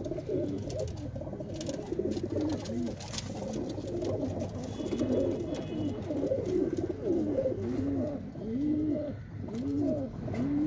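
A loft full of domestic pigeons cooing together, many overlapping coos that rise and fall in pitch without a break.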